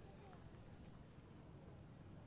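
Faint, steady high-pitched trill of crickets in a quiet night ambience.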